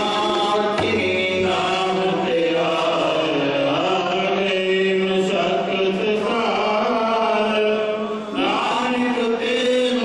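Sikh kirtan: men singing a hymn into microphones, with a harmonium playing long steady notes beneath the voices.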